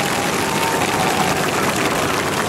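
Steady hiss of falling rain.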